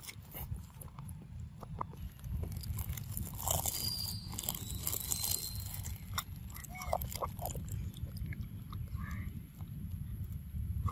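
A macaque biting into and chewing a ripe mango close to the microphone: a run of short, sharp bites and mouth sounds over a steady low rumble.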